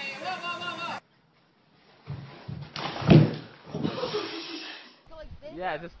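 A man's voice briefly, then a moment of dead silence, then a loud thump about three seconds in amid a noisy scuffle, before voices resume near the end.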